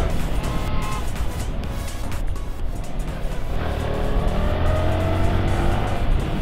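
A motorcycle engine running on the move, with road and wind noise. Its pitch rises through the second half as it speeds up.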